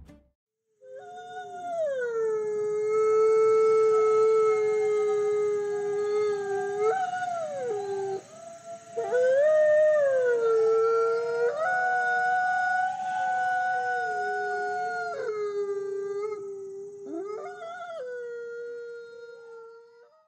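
Wolves howling: long, drawn-out howls that hold a pitch and then slide up or down, with two howls overlapping at times. They start about a second in and fade near the end.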